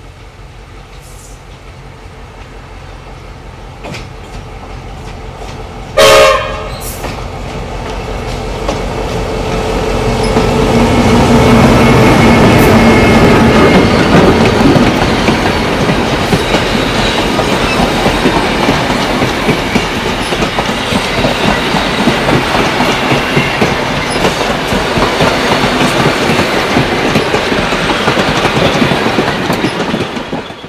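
Victorian Railways T-class diesel locomotive approaching on an upgrade, with one short, loud horn blast about six seconds in. Its engine grows louder up to the moment it passes, then the vintage carriages roll by with a steady rattle of wheels over the track.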